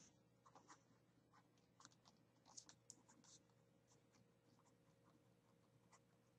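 Near silence: room tone with a few faint, scattered clicks in the first half.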